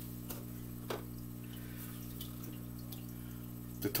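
Steady low hum of aquarium equipment, with a few faint water drips and light taps scattered through it, the clearest about a second in.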